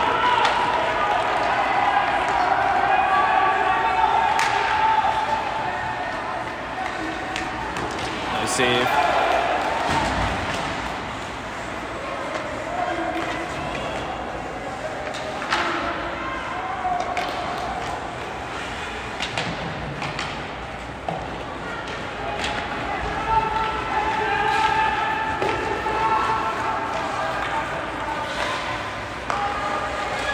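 Ice hockey game sound in a large echoing arena: indistinct voices calling and shouting over the play, with scattered sharp knocks of sticks and puck against the ice and boards, one louder ringing knock about nine seconds in.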